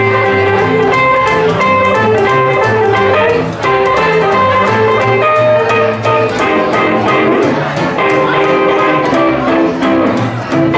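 Live small acoustic swing band playing an instrumental passage: upright double bass and strummed archtop guitars keeping a steady chop rhythm under a held melody line.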